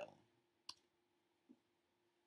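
A single sharp click of a computer keyboard key, the Return key pressed to run a command, a little over half a second in. A fainter soft tap follows near the three-quarter mark. The rest is near silence.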